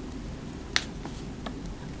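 A sharp click a little before the middle, followed by two fainter ticks, over a low hiss.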